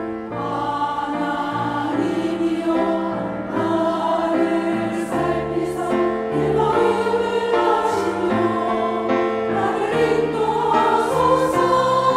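Women's church choir singing an anthem in Korean, sustained sung lines that grow a little louder toward the end.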